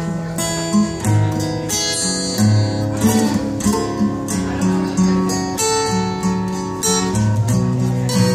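Acoustic guitar played solo, strumming chords about once a second with notes ringing on between strums: the instrumental introduction of a song, before any singing.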